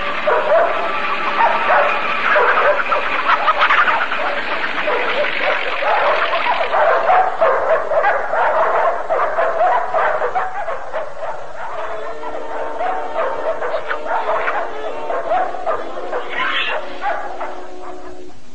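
Cartoon dogs barking and yapping over orchestral film score. The barking is densest in the first half, then thins out as steadier music takes over.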